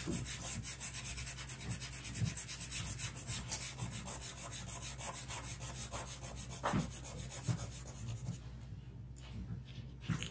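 A drawing tool rubbed rapidly back and forth on paper, shading charcoal on a portrait: a dense, fast scratching rhythm that dies away about eight seconds in.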